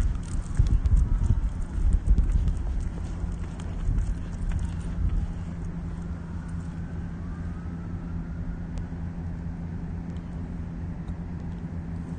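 Footsteps on a concrete sidewalk and phone-handling rumble for the first five seconds or so, then a steady low hum once the walking stops.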